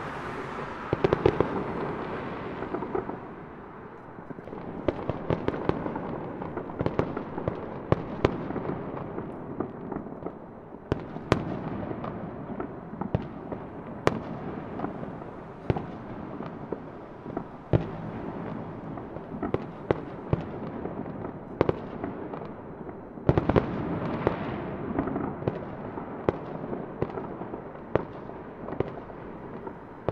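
Fireworks going off: a continuous rumble of overlapping bursts with frequent sharp pops and bangs. Heavier volleys come about a second in and again about three-quarters of the way through.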